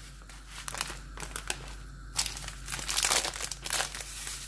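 Plastic food packets crinkling in the hands: a packet of desiccated coconut is emptied into a bowl, then a plastic bag of brown sugar is picked up. The rustling comes in uneven bursts and is loudest in the second half.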